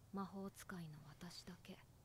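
Quiet speech: a voice speaking softly in Japanese, anime dialogue.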